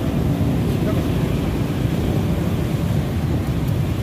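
Steady low rumble of busy city road traffic, cars and motorbikes passing close by.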